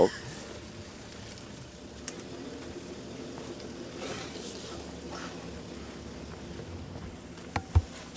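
Game-drive vehicle engine idling with a steady low hum, with a brief low knock near the end.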